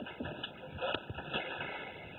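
Faint rustling and shuffling of movement, with one sharp click about a second in.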